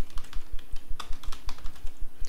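Typing on a computer keyboard: a quick, steady run of keystroke clicks.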